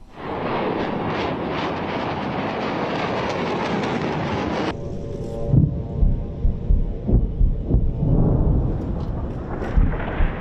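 Loud rushing roar of rockets launching, cut off abruptly about halfway through. It is followed by a string of deep explosion booms with rumble from strikes on the city.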